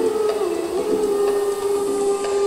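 Live jazz-pop band music with one long held melody note on top that dips in pitch and comes back up about halfway through.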